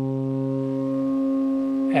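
AE Modular GRAINS module running the Scheveningen firmware, a digital sine oscillator with a wavefolder, holding one steady low drone note as the wavefolding is turned up. The tone grows brighter, with the upper harmonics coming up and the lowest partial fading from about a second in.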